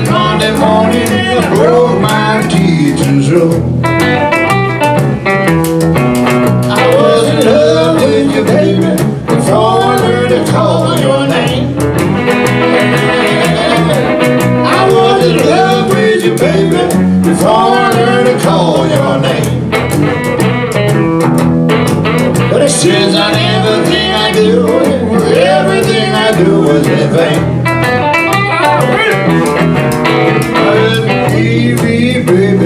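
A small band playing a blues number live: electric guitars strumming chords under a lead of singing and saxophone.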